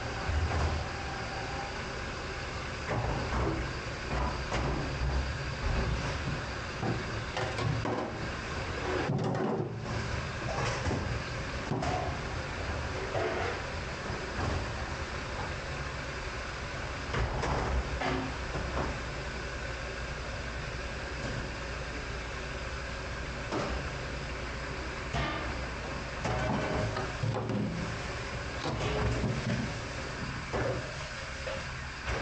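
A stainless steel sheet pan being scrubbed by hand in a soapy steel sink: water sloshing and splashing, with occasional knocks of metal on metal, over a steady background rumble.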